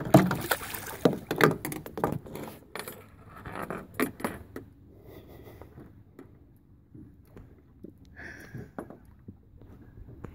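A hooked jack crevalle, just slipped from a boga grip, thrashing and splashing at the surface against the side of a boat: a quick run of sharp splashes and knocks over the first few seconds, then only scattered smaller sounds.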